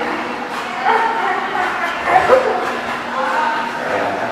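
Two dogs play-wrestling, a husky-type dog and a smaller black dog, with dog vocalizations through the play: pitched calls about a second in and again around the middle, the loudest just after the middle.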